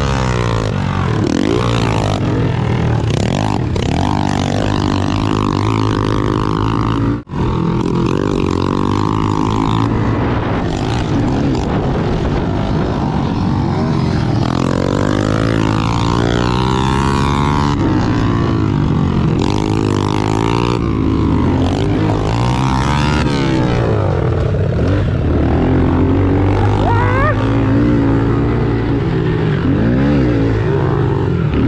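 A Honda CRF110's small single-cylinder four-stroke engine running hard, its revs repeatedly rising and falling as the rider accelerates and backs off around the dirt track, with other pit bikes running close by. The sound drops out for a moment about seven seconds in.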